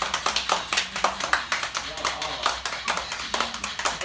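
Children clapping their hands, a quick, uneven run of sharp claps.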